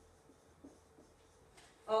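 Faint felt-tip marker strokes on a whiteboard as a word is written, with a few light ticks. A woman's voice starts just at the end.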